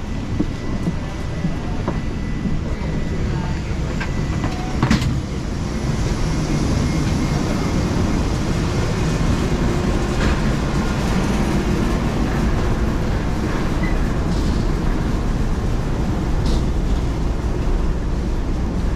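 Steady low rumble of wheeled suitcases and footsteps on the floor of an airport jet bridge, with a sharp knock about five seconds in; the rumble grows a little louder from about six seconds in.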